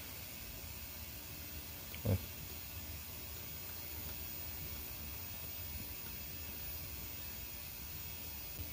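Steady background hiss with a low hum underneath, and a short spoken "oh" about two seconds in.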